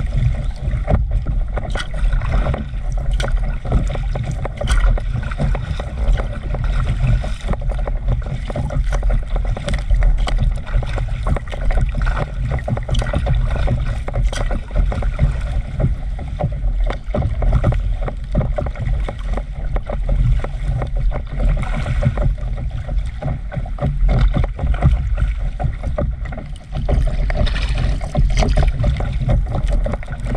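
Water splashing and lapping against the nose of a moving stand-up paddleboard, picked up close to the waterline, over a steady low rumble with frequent small splashes.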